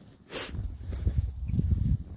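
A wooden shed door being pulled open, with a brief hiss near the start and then an uneven low rumbling and scraping from about half a second in.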